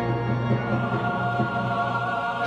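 A large choir singing held chords with brass accompaniment.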